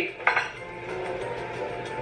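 A short clink of tableware about a third of a second in, then a quieter steady background.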